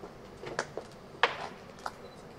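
A handful of short, sharp knocks and clicks, the loudest about a second in, over a faint steady background.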